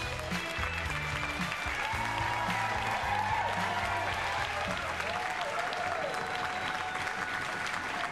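Studio audience applauding over the show's theme music. The music's bass drops out about five seconds in, leaving the clapping.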